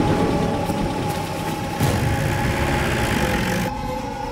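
A truck's engine rumbling, mixed with a steady droning music score; the rumble cuts off a little before the end.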